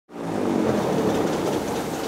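Airboat engine and propeller running steadily, fading in right at the start.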